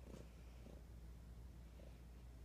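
Domestic cat purring softly close to the microphone, a faint steady low rumble.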